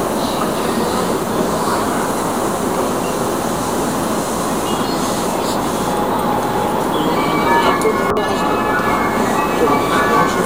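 Interior of a commuter train car in motion: a steady, loud rumble of wheels and running gear on the track. About seven seconds in, thin high whining tones join the rumble.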